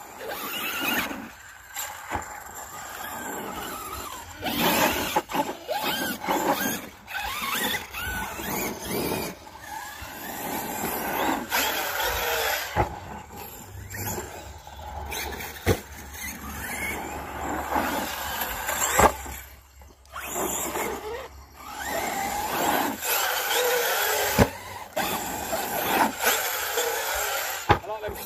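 Several large brushless electric RC cars driving on a dirt jump track: motors whining up and down in pitch as they accelerate and rev, with tyres scrabbling on the dirt and repeated sharp knocks from landings and hits.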